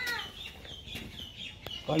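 A chicken clucking: a string of short, high-pitched calls.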